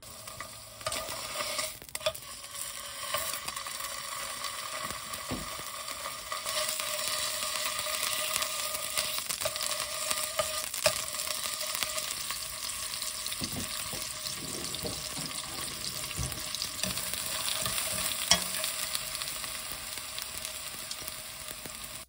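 Salmon fillet sizzling in hot oil in a nonstick frying pan, with scattered crackles and pops.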